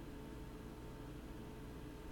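Quiet room tone: a faint steady hum with a couple of thin steady tones.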